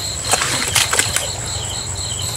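Rustling and snapping of water hyacinth and grass stems as hands push through them, with several sharp clicks in the first second or so. Behind it, insects chirp steadily at about five pulses a second.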